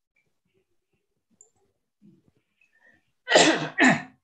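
Near silence, then near the end a person sneezes loudly in two quick bursts, heard over a video call.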